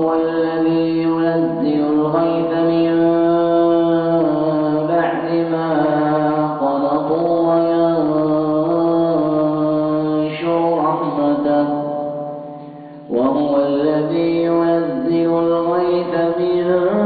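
A man's voice chanting Quranic recitation in long, melodic held notes that step up and down in pitch. The line trails off about twelve seconds in and a new phrase starts a second later.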